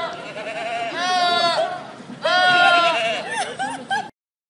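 Loud, drawn-out screams, each held at a steady high pitch for under a second, trading back and forth about three times. The screams are dubbed onto two snapping turtles gaping at each other; real snapping turtles only hiss.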